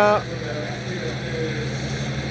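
Steady engine hum over an even wash of outdoor race noise from a live road-race broadcast. The tail of a commentator's word is heard at the very start.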